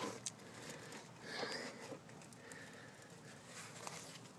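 Quiet, with a faint breath about one and a half seconds in and a couple of soft clicks: a person straining on a breaker bar against the serpentine-belt tensioner.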